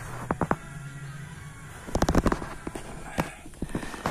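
A few sharp knocks and clicks, with a quick cluster of them about two seconds in and a single one a second later.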